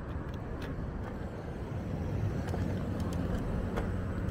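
Steady low rumble of wind and road noise from riding an electric scooter across a city street, with a few faint light clicks.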